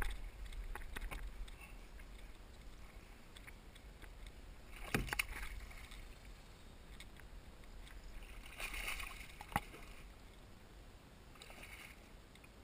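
Water sloshing and splashing against a kayak hull, with scattered sharp knocks and clicks from rod-and-reel handling, while a bass is hooked and played on a bent rod.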